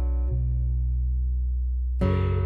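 Sampled bass and guitar instruments in a Kontakt multi, played by a MIDI slice triggered from reMIDI 3, sounding slow, held chords over a deep bass note. A new chord comes in about a third of a second in, and another right at the end.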